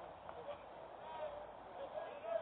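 Faint, indistinct voices of players and spectators chattering and calling out at a baseball field.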